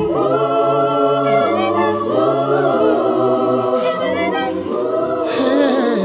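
Voices singing a cappella in harmony, holding long chords with some gliding notes, with no drums or instruments.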